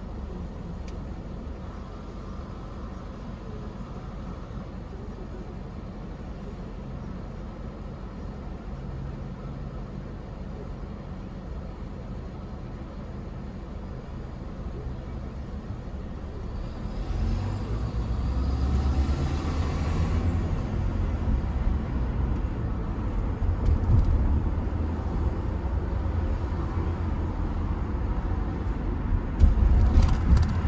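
A car idling with a steady low hum while stopped, then pulling away; engine and road rumble grow louder and rise in pitch from about halfway through as it gets up to speed. A couple of sharp thumps near the end.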